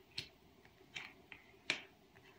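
Tarot cards being drawn from the deck and laid down on a cloth-covered table: four short, sharp card clicks, the last one the loudest.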